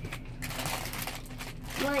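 Low rustling and handling noise with a few soft clicks, then a small child's voice begins near the end.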